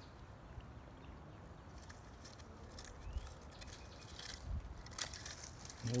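Faint scattered crackling and rustling of dry grass and twigs over a low wind rumble on the microphone.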